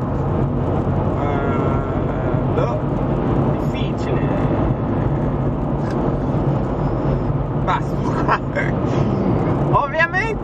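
Steady road and engine noise inside a car cruising on a highway: an even low hum.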